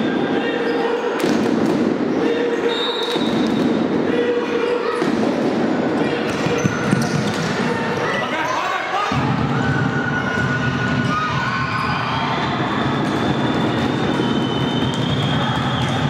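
A futsal ball being kicked and bouncing on a wooden sports-hall floor, in repeated sharp thuds that echo in the hall, with players' shouts. A steady low rumble comes in about nine seconds in.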